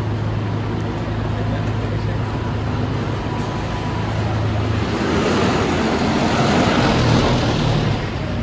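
Street traffic, with a steady low hum for the first few seconds, then a louder rushing swell from about five seconds in as a vehicle passes close by.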